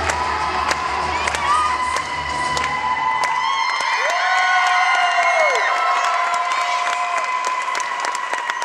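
Crowd of children cheering and shouting with high, drawn-out cries and scattered claps as a dance routine's music ends about three and a half seconds in.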